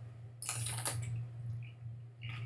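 A crisp bite into a fresh green chili pod about half a second in, followed by wet crunching as it is chewed.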